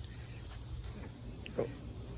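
Quiet background with a steady low hum. Near the end a man briefly says "Cool."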